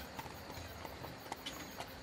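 Faint clip-clop of horse hooves, a horse-drawn carriage ambience, with a few light ticks over a soft steady background noise.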